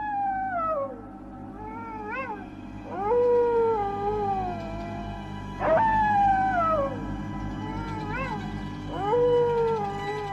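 A looped horror sound effect of long, howl-like wails: each falls in pitch or rises and holds, repeating about every three seconds over a steady low drone.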